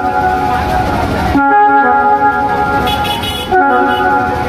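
Dhumal band music led by brass horns playing loud, sustained chords that change to new notes twice.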